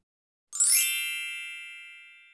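Electronic chime sound effect for a logo sting: about half a second in, a quick rising shimmer leads into a bright ringing chord that slowly fades.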